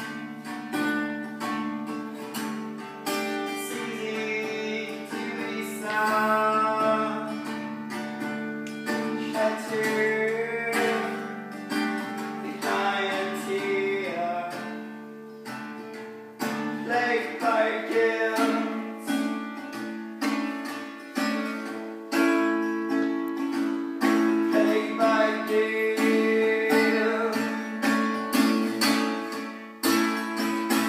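An acoustic guitar strummed steadily, with a man singing over it in phrases. The strumming grows louder about halfway through.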